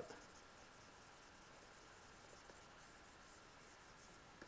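Faint scratching of a pen stylus stroking across a graphics tablet as grey tone is brushed in digitally.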